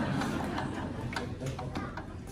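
Scattered light ticks and taps from drumsticks, over a low murmur of voices.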